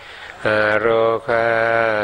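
A Thai Buddhist monk's male voice chanting the Pali word "arogā" in a steady monotone, part of a metta (loving-kindness) recitation. The chant starts about half a second in, after a brief pause.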